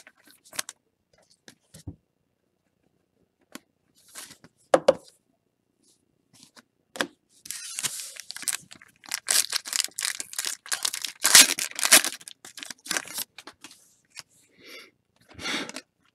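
A baseball card pack wrapper being torn open and crinkled by hand: scattered light rustles and clicks at first, then a dense run of crinkling and tearing through the middle, loudest shortly before the cards come out.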